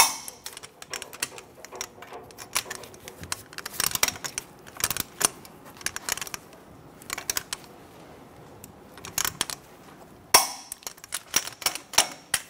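Torque wrench ratchet clicking in several short runs as the front brake caliper bracket bolts are tightened to 170 ft-lb, with a few sharper metallic clacks, the loudest near the end.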